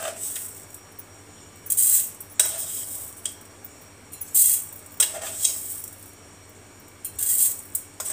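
A steel spoon scooping sugar from a steel tin and tipping it into a stainless-steel mixer-grinder jar: a few short metallic clinks and scrapes, spaced a couple of seconds apart.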